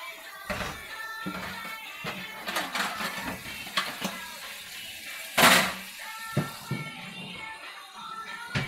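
Background music with singing, over knocks and clinks of dishes and cups being handled at a kitchen sink, with one loud, short burst of noise about five and a half seconds in.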